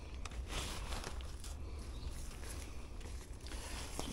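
Faint rustling and light clicks of a black fabric umbrella being taken down and folded, over a steady low rumble.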